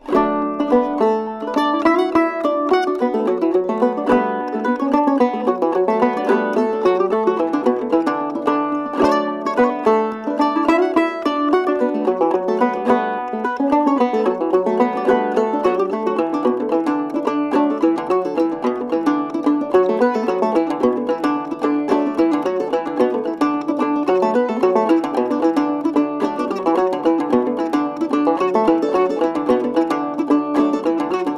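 An old-time tune played as a duet on clawhammer gourd banjo and mandolin, with quick plucked notes at a steady, driving pace. The music starts suddenly.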